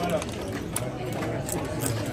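A few sharp clicks of play being handled on a casino card table, over a murmur of voices in the room.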